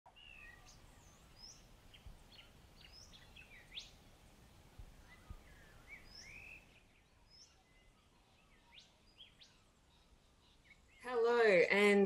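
Faint birdsong: many short chirps and calls sliding up and down in pitch, thinning out after about seven seconds.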